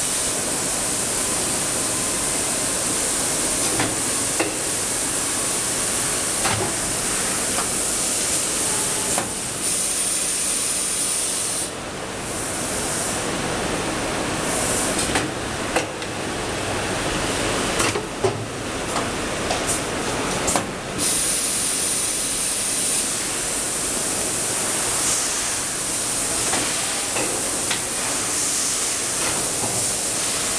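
Steady loud hiss of running machinery, with a few short clicks and knocks scattered through.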